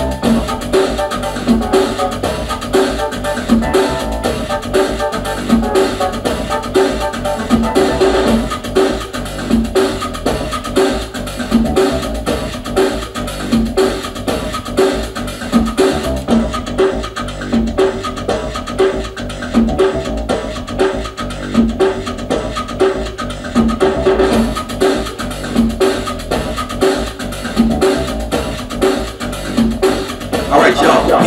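Latin-style electronic groove: a drum machine beat with percussion repeating steadily, and a synthesizer keyboard played along with it.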